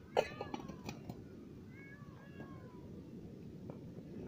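Anar fountain firework burning inside a closed steel canister: a low, muffled rumbling noise with a few sharp crackles, the loudest about a quarter second in. Several short falling cries of unknown source sound over it near the start and again about two seconds in.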